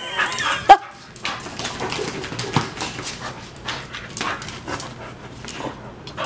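A pit bull breathing noisily and snuffling in quick short strokes close to the microphone, with a sharp knock just under a second in.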